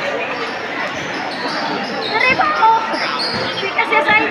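A basketball game in a large covered court: a ball bouncing on the court over steady spectator chatter, with voices shouting from about two seconds in.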